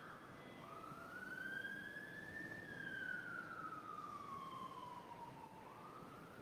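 Faint emergency-vehicle siren in a slow wail. It makes one long rise and fall in pitch over about five seconds and starts to rise again near the end.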